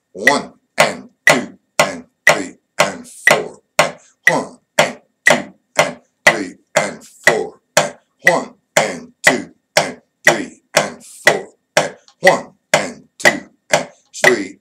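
Drumstick strokes tapping out a 4/4 eighth-note reading exercise at 60 bpm: a steady run of sharp hits about two a second.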